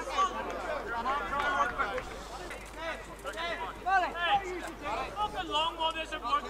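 Indistinct voices of several men talking and calling out, overlapping throughout.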